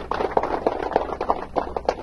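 A small group of people clapping, a ragged round of applause that thins out to a few scattered claps near the end.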